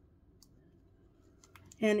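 Near silence with a faint click or two from a small plastic toy figure being turned in the fingers. A voice starts near the end.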